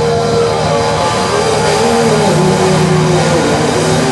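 Live rock band playing loud without vocals: distorted electric guitar holding and bending long notes over a steady low drone.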